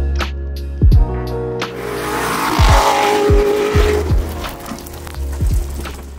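Music with a steady kick-drum beat. From about two seconds in, an off-road Corvette's engine and its tyres sliding through a dirt field come in under the music for a couple of seconds.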